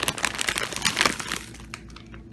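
Plastic bags of frozen broccoli crinkling as they are handled, a dense crackle that dies away about a second and a half in.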